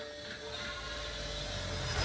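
Opening of a film trailer's soundtrack: a low drone with a steady held note, slowly growing louder.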